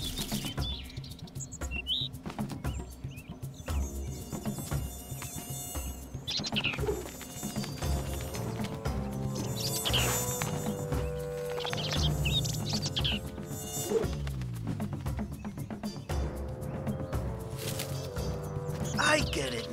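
Cartoon sound effect of mosquitoes buzzing, over background music with a steady beat.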